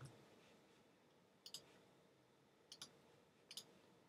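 Computer mouse clicking: three faint press-and-release clicks, about a second apart, over near silence.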